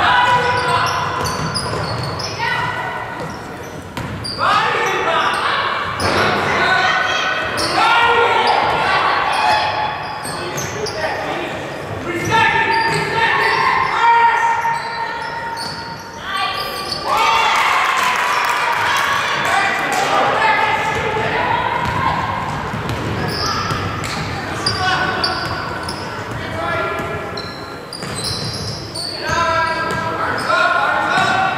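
Basketball game sounds in a large gym: a ball dribbled on a hardwood floor, with players and spectators shouting at intervals, all echoing in the hall.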